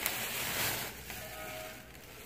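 Thin plastic produce bag holding a bunch of bananas rustling as it is handled, fading off, with a faint steady tone joining a second in.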